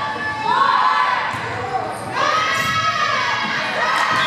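High-pitched voices shouting two long, drawn-out calls in a gym during a volleyball rally, over crowd noise, with the ball being struck.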